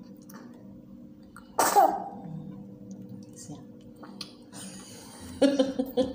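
A single sharp sneeze about one and a half seconds in. Near the end comes a short burst of a woman laughing.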